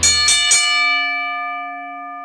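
A ring bell struck three times in quick succession, about a quarter second apart, then ringing on and slowly fading.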